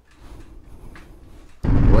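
Faint room tone, then about one and a half seconds in, loud road noise cuts in abruptly: a Harley-Davidson Street Glide's V-twin running at highway speed, with wind rushing over the microphone.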